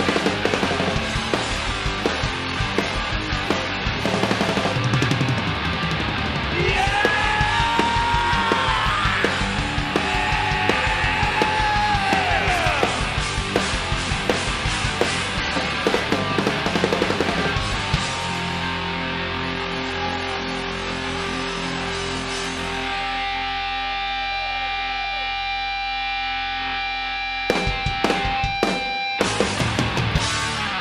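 Hard rock band playing live, with distorted electric guitars and a drum kit at full volume. About eighteen seconds in the drumming stops and a held guitar chord rings on, and a burst of final drum and cymbal hits near the end closes the song.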